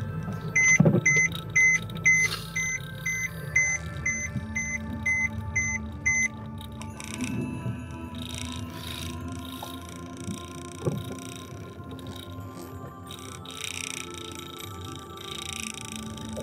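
A dozen short electronic beeps, about two a second, that stop about six seconds in, over steady background music.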